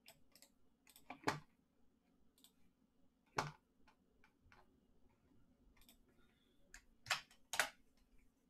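Computer mouse and keyboard clicks: about ten short, sharp clicks at uneven intervals. The loudest comes about a second in, another about three and a half seconds in, and a close pair near the end. A faint steady hum lies underneath.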